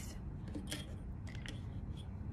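A few faint clicks and light scrapes as a stainless steel ruler is picked up and laid across a sheet of cardstock, over a low steady room hum.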